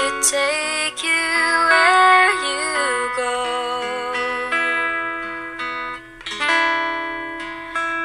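A slow pop song with acoustic guitar and a woman singing the melody. The sound dips briefly about six seconds in, then the music comes back fuller.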